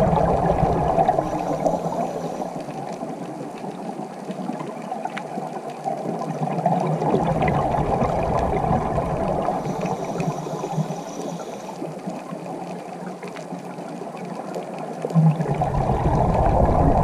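Underwater sound of a scuba diver's breathing through a regulator: a steady rushing of water, with louder rumbling bursts of exhaled bubbles about every seven to eight seconds.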